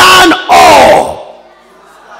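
A congregation reading a Bible verse aloud in unison with the preacher, in two loud shouted phrases. About halfway through, it dies away to a low crowd murmur.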